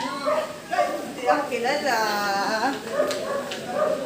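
Indistinct voices of several people talking, with a high, drawn-out whine partway through.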